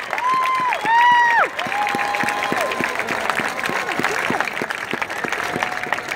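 A stadium crowd clapping and cheering, with several high, held whoops over the clapping in the first three seconds, the loudest about a second in.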